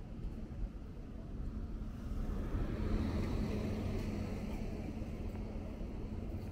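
A small box truck drives past close by, its engine hum swelling to a peak about three seconds in and then easing off.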